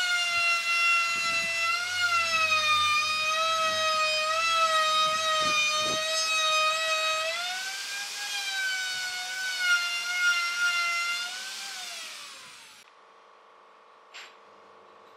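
Handheld electric router (DCA) running at high speed, a loud steady whine, while routing the edge of a round pine tabletop. Its pitch rises a little about halfway through, then it winds down with falling pitch and stops shortly before the end.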